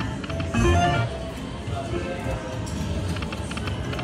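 Aristocrat Karma Kat video slot machine playing its electronic game music and spin sounds as the reels spin, with a short melodic jingle about half a second in.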